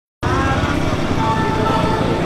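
Tuk-tuk (auto-rickshaw) engine running close by, with voices and music mixed in.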